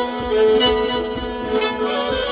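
Solo violin playing Persian classical music in dastgah Shur: long bowed notes, stepping to a slightly lower note about half a second in.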